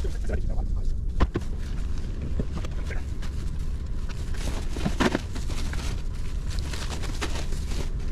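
Groceries being loaded onto a car's back seat through the open rear door: rustling and handling noises with a sharp knock about a second in, and a brief voice near the middle, over a steady low rumble.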